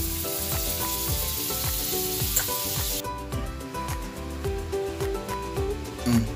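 Butter sizzling as it melts in hot oil on a flat pan for about the first three seconds, then stopping, over soft background music with a steady beat.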